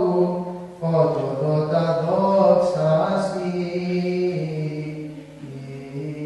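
Byzantine chant: a single chanting voice sings a slow, melismatic line of long held notes. A new phrase begins about a second in, and the pitch steps down near the end.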